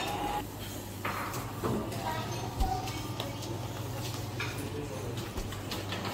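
Indoor room tone: a steady low hum, with faint distant voices and scattered light clicks and clinks.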